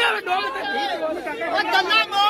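Men in a protest crowd shouting slogans, several raised voices overlapping.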